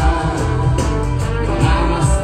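Live pop-rock song with a steady beat and guitar, with singing from a male lead and backing singers.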